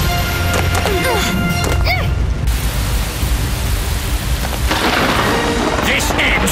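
Cartoon action sound effects over background music: a continuous heavy rumble. A few swooping whistle-like glides come at one to two seconds, and a rushing noise swells near the end.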